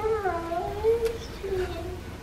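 A child crying in a long, wavering, high-pitched whimper, then a shorter whimper near the end: upset and frightened.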